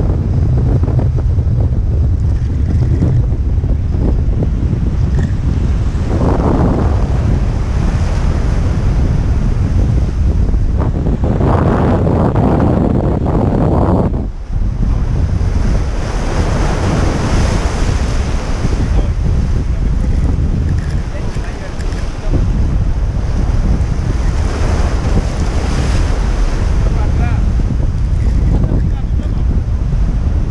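Sea waves breaking and washing over shoreline rocks, heavy wind buffeting the microphone. Surges of surf come several times, the biggest around twelve seconds in, cutting off suddenly at about fourteen seconds.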